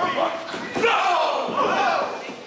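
Indistinct shouting voices with a few sharp thuds of wrestlers striking each other and hitting the ring, echoing in a hall.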